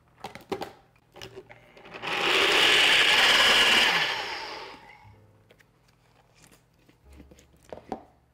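Bullet-style personal blender running for about two seconds as it purées cashews and water into a sauce, then spinning down. Light plastic clicks come before it, as the cup is seated on the base, and again near the end.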